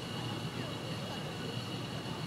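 Steady outdoor background noise: a continuous low rumble with indistinct distant voices and a faint steady high-pitched tone, with no distinct event.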